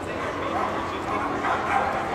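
A dog giving a few short yips over the background chatter of a crowd in a large hall.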